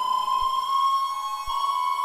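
A sustained, siren-like electronic drone from a Soma synthesizer setup (Lyra-8, Pipe, Cosmos): one high tone with overtones, gliding slowly upward and shifting slightly about one and a half seconds in.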